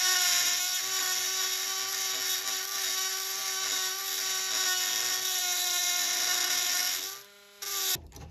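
Electric rotary tool with an abrasive grinding stone grinding down a rusted steel rivet head: a steady high whine over a grinding hiss, which cuts off about seven seconds in.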